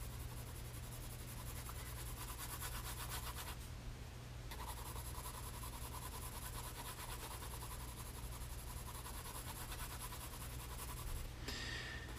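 Graphite pencil shading on sketchbook paper: faint, quick, repeated scratchy strokes, with a short pause about four seconds in.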